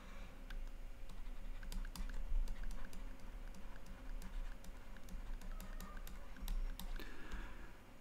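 Stylus on a tablet screen during handwriting: a run of faint, irregular small clicks and taps.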